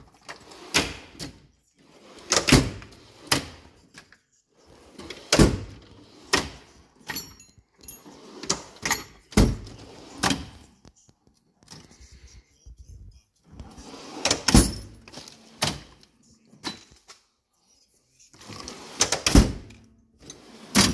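Steel drawers of a Mac Tools Tech Series toolbox sliding open and shut over and over, each close landing with a good solid clunk.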